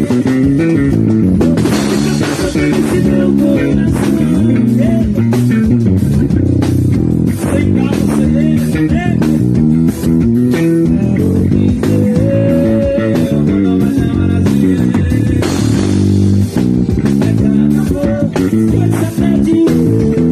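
Electric bass guitar played fingerstyle, a busy forró groove of quick plucked notes in the low register.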